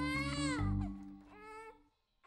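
A baby crying out twice, a long rising-and-falling cry at the start and a shorter one a second later, over sustained music notes that fade out about halfway through.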